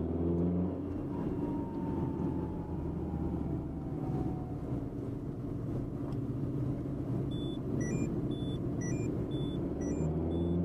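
Car engine and road rumble heard from inside the cabin while driving, with a clear engine note in the first second before it settles into a steady low rumble. A few short high electronic tones come in during the last couple of seconds.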